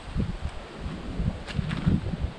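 Outdoor ambience among trees and brush: a faint rustle of leaves, with irregular low buffeting of wind on the microphone.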